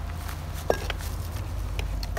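A single sharp knock about two-thirds of a second in, over a steady low rumble and faint scuffing: a steel cooking pot of food being set down on a concrete kerb.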